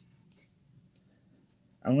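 Near silence with a few faint handling sounds, a cardboard coin holder being turned in the fingers. A man starts speaking near the end.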